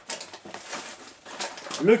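Clear plastic parts bags rustling and crinkling as they are handled, a run of irregular small crackles and clicks.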